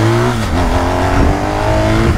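BMW R 1250 GS boxer-twin engine pulling under acceleration, its pitch climbing, with a step down about half a second in where it shifts up a gear and climbs again, over wind noise.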